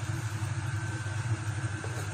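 A steady low mechanical hum with a faint thin whine above it, as from a kitchen appliance running.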